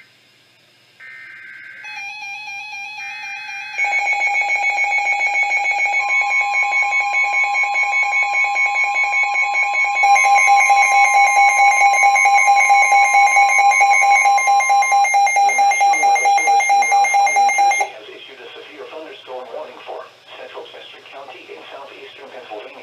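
NOAA weather alert radios receiving a severe thunderstorm warning: short bursts of the SAME data header in the first few seconds, then several radios sounding their alarms together as a loud, rapidly pulsing electronic beeping, growing louder about ten seconds in, with the steady NWS 1050 Hz warning tone underneath for several seconds. The alarms cut off near the end and the radio voice begins reading the warning.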